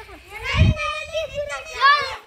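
Children's high-pitched voices calling out loudly, with one long drawn-out call in the middle.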